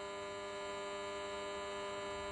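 A steady electrical hum with many evenly spaced overtones, heard in a pause in speech.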